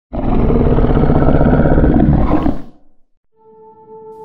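A loud, deep creature roar sound effect that lasts about two and a half seconds and cuts off. After a brief silence, a steady ringing musical tone begins near the end.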